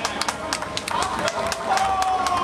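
Scattered audience applause, irregular sharp claps from a small crowd. Past halfway a long steady tone comes in and slowly falls in pitch.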